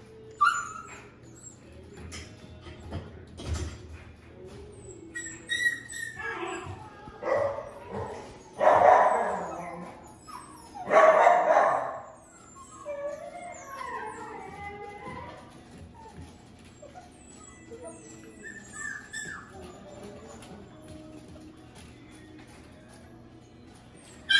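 Goldendoodle puppy whining and yipping for hand-fed treats in short pitched calls, the loudest a few in a row about a third of the way through, with softer whimpers after.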